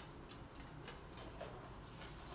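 Quiet room tone with a few faint, scattered ticks and clicks.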